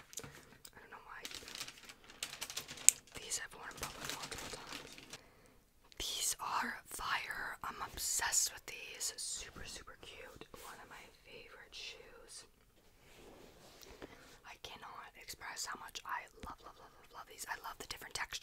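Close-miked rustling and crinkling of shoebox paperwork and packaging being handled, with quick light taps and clicks and one sharp click about three seconds in. Whispering comes and goes between the handling sounds.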